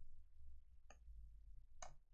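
Two faint clicks at a computer, about a second apart, over a low steady hum.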